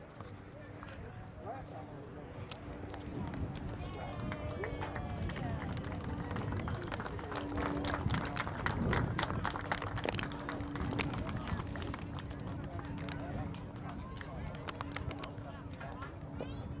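Open-air stadium ambience: indistinct chatter of people near the microphone over a steady low hum, with a dense run of sharp clicks and taps in the middle that is the loudest part.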